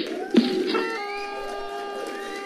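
A single cough, then a celebration sound effect: a bright, sustained chord of steady chime-like tones with a short rising glide, which sets in just under a second in and holds.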